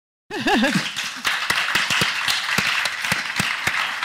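Audience applauding, starting suddenly a moment in, with a voice briefly whooping at the start.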